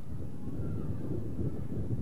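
Steady low rumbling background noise of an outdoor broadcast feed, with wind buffeting the microphone.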